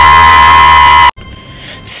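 A person's long, very loud high-pitched scream, held on one steady note and cut off abruptly about a second in.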